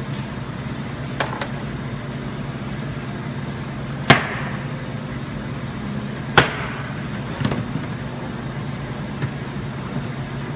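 Interior plastic trim panel clips popping loose as the quarter trim panel is pulled off by hand: two loud sharp snaps about two seconds apart near the middle, with a few smaller clicks, over a steady low hum.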